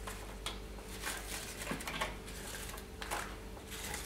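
Crisp fried crostoli pastries being picked up and turned over by hand on a metal baking tray: light, scattered rustles and clicks.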